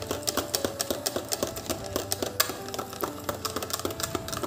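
Wire balloon whisk clicking and rattling rapidly against the sides of a plastic measuring jug as banana-and-egg batter is beaten.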